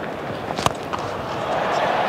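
Cricket bat striking the ball once, a single sharp crack about two-thirds of a second in: a clean, well-timed hit that sends the ball high for six. Steady stadium crowd noise runs underneath.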